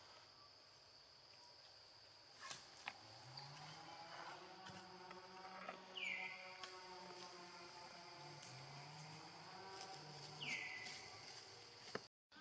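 Faint, steady high-pitched drone of insects. A short falling call comes twice, about six seconds in and near the end. A faint low hum joins from about four seconds in.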